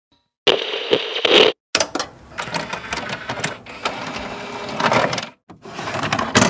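Sound effects of an animated logo intro: bursts of noise full of sharp clicks, starting about half a second in, with a brief break after a second and a half and another near the end.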